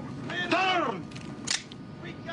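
A man shouts one word, then a single sharp crack comes about one and a half seconds in, over a steady low cabin drone.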